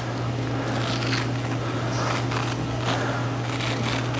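Faint, irregular crackling and tearing as a textured silicone breast implant is peeled by hand out of its thick scar capsule, its rough surface clinging to the tissue like Velcro. A steady low hum runs underneath.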